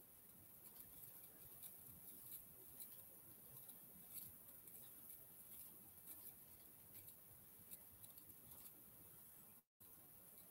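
Near silence with faint, irregular computer-mouse clicks, a couple a second, as Street View is clicked through. The sound cuts out completely for a moment near the end.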